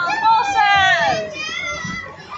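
Children's voices calling out as the miniature train moves off, with one long high call falling in pitch in the first second, then fainter chatter.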